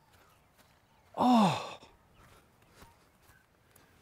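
A person's short groaning sigh about a second in, its pitch rising and then falling away.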